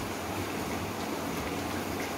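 Papdi, a thin round of maida dough, deep-frying in medium-hot oil in a wok, a steady sizzle of bubbling oil.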